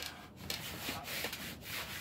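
Hands rubbing tape down onto a shed's tarp roof, a continuous scratchy rubbing of palms over the tape and fabric. The tape covers a cracked seam in the roof.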